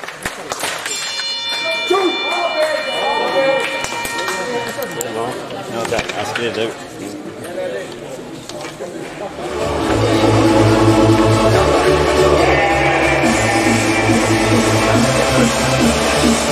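Voices in the hall, then a steady electronic tone of several pitches about a second in, lasting about three seconds: the end signal as the table hockey game clock runs out. From about ten seconds in, loud music with a heavy, stepping bass takes over.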